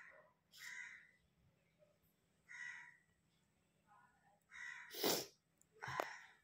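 A crow cawing faintly, several separate calls a second or two apart, with a sharper, harsher burst about five seconds in.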